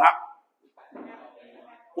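Speech: a man's voice finishing a word, then fainter voices talking in the room.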